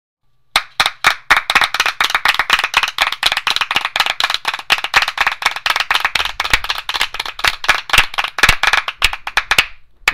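A group of people clapping, a run of sharp claps that starts about half a second in and stops just before the end.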